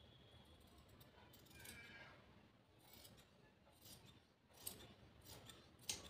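Tailor's shears snipping into cloth, a few faint short cuts starting late on, the sharpest just before the end.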